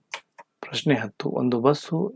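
A man speaking in a lecture-style narration, with two short ticks just before he starts.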